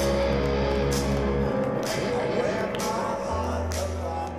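Live rap-rock band playing over a festival PA, heard from inside the crowd: electric guitar and held bass notes, with sharp hits about a second in and near the end.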